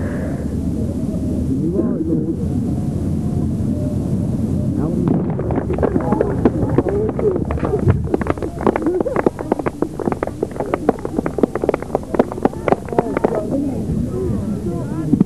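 Murmur of several voices, then from about five seconds in, scattered hand clapping from a small group of spectators that grows denser and runs on to near the end.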